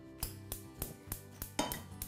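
Gas hob's spark igniter clicking steadily, about three sharp clicks a second, as a burner is lit, over soft background music.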